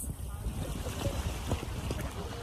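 Wind buffeting the microphone, a steady low rumble, over the open water of a wide river.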